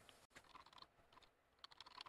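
Faint computer keyboard typing: scattered keystrokes, then a quick run of them near the end.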